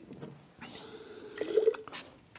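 Wine being swished in the mouth and spat into a ceramic spit pitcher, a wet liquid gurgle that builds through the second half, with a sharp knock just before the end.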